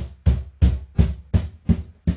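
Bass strokes on a Spanish J. Leiva cajon, struck with the open hand low on the front panel at an even pace of about three hits a second. Each hit is a deep boom, and the player is trying spots on the panel to find the best bass.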